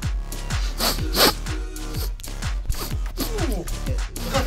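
Electronic dance music with a steady beat, and a cartoon fart sound effect about a second in.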